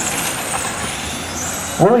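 Radio-controlled racing cars' motors whining as they run the track, a high whine that slowly rises and falls in pitch.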